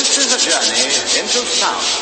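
A noisy sound-effect break in an electronic battle remix: a rasping hiss that pulses quickly, with short swooping pitch glides over it and no steady beat.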